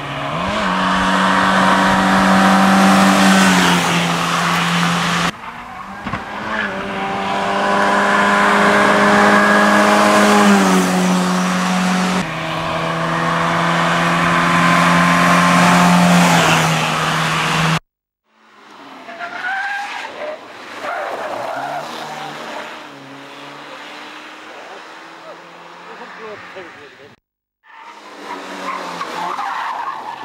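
Fiat Cinquecento hillclimb cars driven flat out in several passes, their small engines held at high revs, the note climbing and then dropping in a step at each upshift. In the later, quieter passes tyres squeal through the corners.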